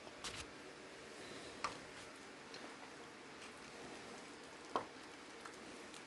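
Faint, steady simmering of a cream sauce in a skillet, with a few light clicks of a wooden spoon against the pan as parmesan is stirred in.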